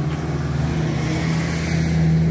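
An engine running steadily at idle, a low even hum. A broad rushing noise swells over it about a second in.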